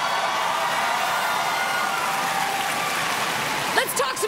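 Live audience applauding and cheering, a steady dense clatter of clapping with voices mixed in.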